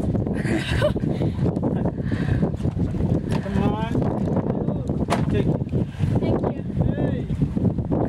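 Indistinct voices talking on and off over a steady low rumble of wind and water noise.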